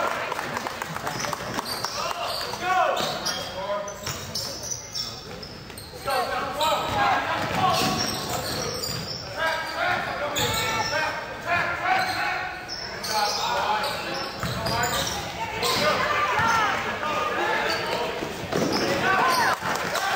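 Basketball being dribbled on a hardwood gym floor during live play, with players and spectators shouting, all echoing in the large hall.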